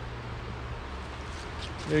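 Longboard wheels rolling on an asphalt path, a steady rumble with hiss.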